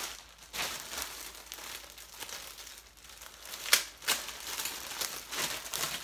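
Packaging crinkling and rustling in the hands as a garment is unwrapped, with a few sharper crackles, the loudest a little past halfway.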